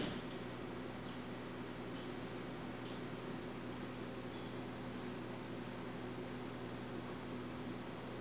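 Steady faint hiss of room tone and recording noise, with a low steady electrical hum underneath.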